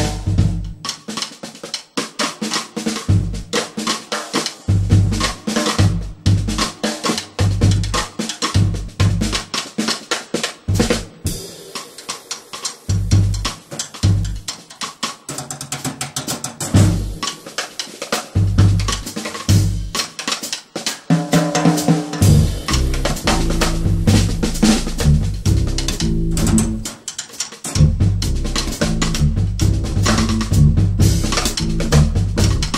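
Drum kit played live: bass drum, snare with rimshots and cymbals in a busy, driving pattern. About two-thirds of the way through, low pitched notes join the drums in a moving line.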